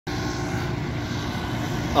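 A steady drone of vehicle engines and traffic noise, even in level, with a faint engine hum running through it.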